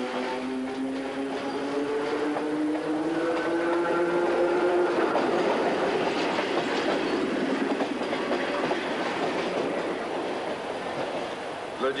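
Passenger train passing close by. A pitched drone rises slowly over the first few seconds, then gives way to the dense rush and clatter of the coaches' wheels on the rails.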